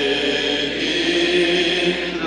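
Church congregation singing a slow worship song together, holding long sustained notes.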